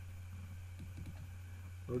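A few faint computer keyboard taps over a steady low hum, with a man's voice starting at the very end.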